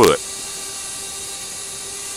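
A steady hiss with a faint, even hum under it, unchanging in pitch, after a man's voice cuts off at the very start.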